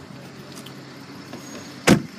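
A car door slammed shut with one solid thump near the end, the 2010 Volkswagen CC's door closing.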